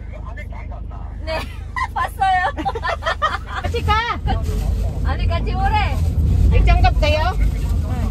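Voices talking inside a moving passenger van over the steady low rumble of the van's engine and tyres on the road. The rumble gets louder a little before halfway through.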